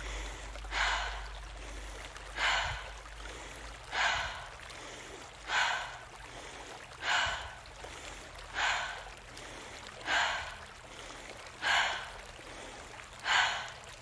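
A woman breathing rhythmically through a breathwork exercise, in through the nose and out through the mouth: nine audible breaths, about one every second and a half.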